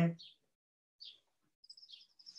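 Faint birdsong: two short high chirps in the first second, then a quick trill of repeated high notes near the end.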